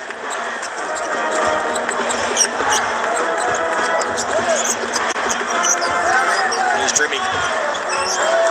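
A basketball being dribbled on a hardwood court, with a steady din of crowd voices in the arena.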